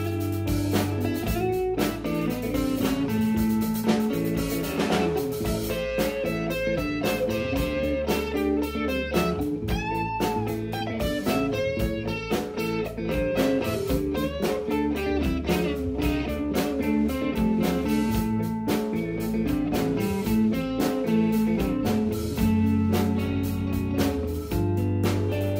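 Live blues-rock band playing an instrumental break: a lead solo on a Fender Stratocaster-style electric guitar, with bent notes, over bass and drums.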